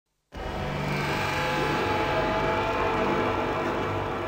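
A steady electronic drone with a low rumble under several held tones, starting abruptly a moment in: the intro sound design of a drum and bass set, played over a festival PA.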